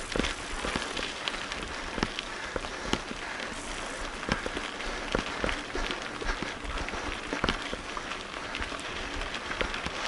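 Mountain bike tyres rolling on a loose gravel road: a steady crunching hiss with many irregular knocks and rattles as the bike jolts over stones.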